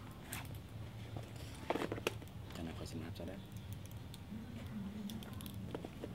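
Faint voices in the background over a steady low hum, with a few sharp clicks or knocks, the loudest about two seconds in.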